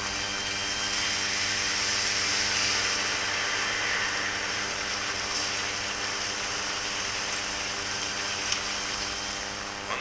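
Heavy rain pouring down in a steady, dense hiss, with a low steady hum underneath.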